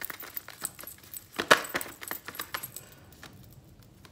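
Tarot cards being shuffled by hand: a quick run of crisp card clicks and snaps, loudest about one and a half seconds in, thinning out after about three seconds.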